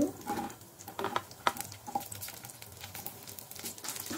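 Cauliflower florets dropping into a non-stick kadhai of hot oil: irregular light taps and clicks as the pieces land and are pushed about with a spatula, over a faint sizzle of the oil.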